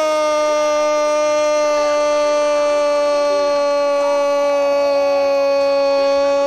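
A radio football commentator's goal cry, 'Gol', held as one long, steady note to call a goal just scored.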